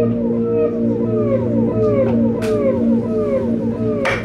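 Concert harp played through an electronic effects unit: a stream of notes, each bending downward in pitch, a few per second, over a sustained low drone.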